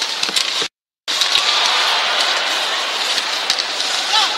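Ice hockey arena sound: a steady hiss of crowd noise and skates scraping the ice, with a few faint clicks of sticks and puck. The sound cuts out completely for about a third of a second near the start.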